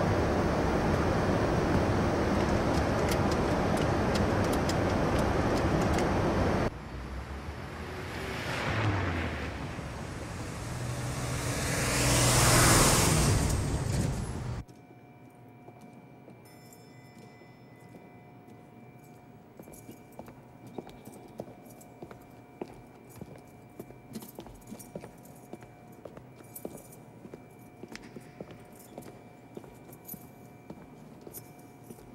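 Aircraft noise: a loud steady rush, as inside a flying airliner. It gives way to a jet swelling past, loudest about twelve seconds in, with a high whine that falls in pitch. Then it cuts suddenly to a quiet room with scattered small clicks and taps.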